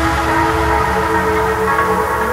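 Uplifting trance music: sustained synth chords held steadily over a low bass, with no prominent beat.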